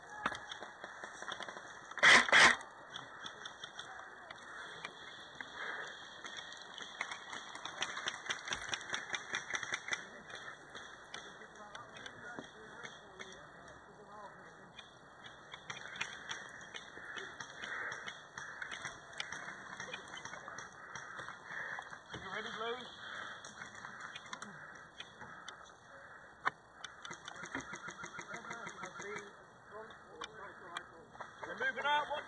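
Airsoft guns firing in bursts of rapid, evenly spaced clicks, with one loud sharp crack about two seconds in.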